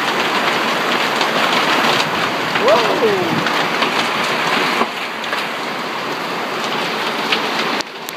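Hail and rain pelting down, a dense steady patter of many small impacts. A voice calls out briefly about three seconds in.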